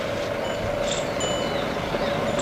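Steady street background noise with a constant hum underneath, and faint short high-pitched tones about half a second and just over a second in.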